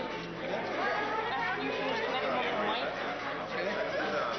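Indistinct crowd chatter: many people talking at once in a large room, with no single voice standing out.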